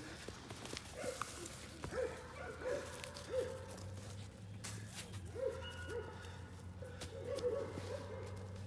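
Young American bandogge mastiff pup giving about a dozen short, high yelping barks in excited prey drive while chasing and grabbing a tug toy.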